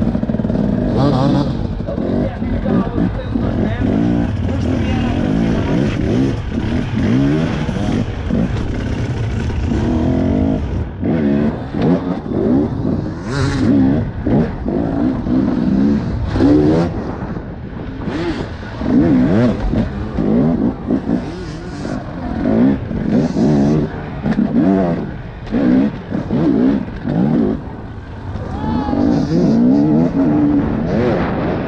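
Enduro motorcycle engine heard from the rider's helmet, revved in repeated short bursts, its pitch swinging up and down every second or so as the throttle is worked over slippery rocks and mud.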